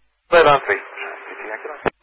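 A pilot's voice over VHF air-band radio, thin and narrow-sounding, reading back a landing clearance. The transmission ends with a sharp click near the end.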